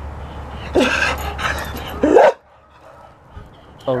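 A dog barking twice, a short bark about a second in and a louder one about two seconds in, with scratchy rustling between them.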